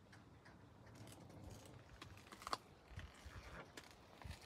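Faint handling noise: light rustles and small clicks, with one sharper click about two and a half seconds in.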